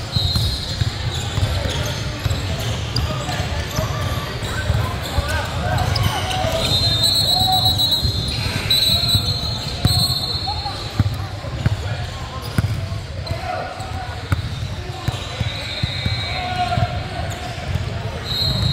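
Basketball dribbling on a hardwood gym floor, with players' and spectators' voices echoing around a large hall. A few high-pitched squeals come through about halfway through and again at the end.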